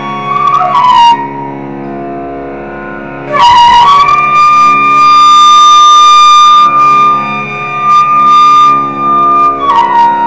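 Carnatic flute playing raga Malayamarutham over a steady drone: a quieter ornamented phrase, then one long held high note for about six seconds that bends down near the end.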